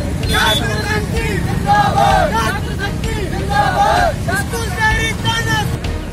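A group of young men shouting protest slogans in repeated bursts, over a steady rumble of street traffic.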